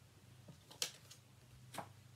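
A few faint short clicks and rustles as laminated dot cards are handled and swapped, the clearest a little under a second in, over a low steady room hum.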